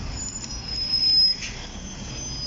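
Low, steady rumble of street traffic, with a thin high-pitched whine from about a third of a second in to about a second and a half in.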